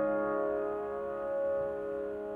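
Solo piano chord ringing on and slowly fading, with no new notes struck.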